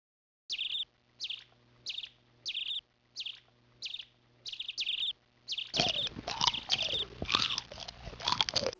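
Mice squeaking: short high squeaks about every 0.6 s, growing denser and louder over the last two seconds, with lower, pitch-sliding cries joining in.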